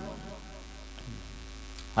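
Steady low electrical mains hum from a microphone sound system, with the last of a man's voice fading out at the start.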